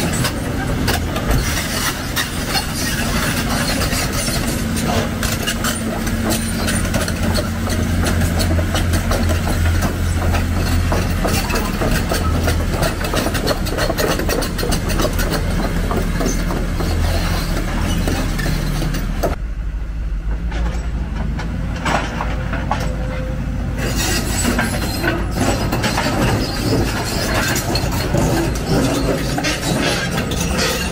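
Crawler excavators working: a Hyundai 290LC's diesel engine running with a steady low hum, while steel tracks and metal parts clank and rattle. About two-thirds of the way in the clatter drops away for a few seconds, leaving mostly the low engine hum, then comes back.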